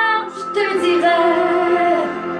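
A woman singing a French ballad, moving between notes and then holding one long note through the second half.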